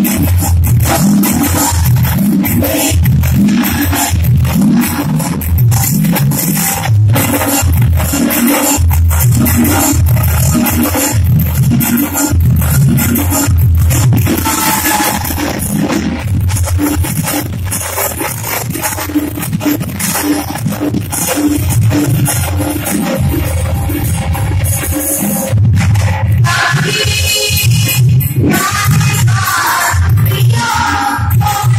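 Live music played through a PA, with a steady rhythmic drumbeat and frequent percussion strokes. A singing voice comes in near the end.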